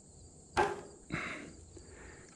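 Chalk line snapped against the tops of wooden 2x10 floor joists: one sharp snap about half a second in, followed by a softer short sound.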